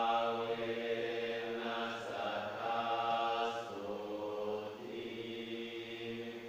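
Buddhist monks chanting in unison, deep voices held in long phrases on a near-monotone pitch, with a short break and a slight step down in pitch at about the middle.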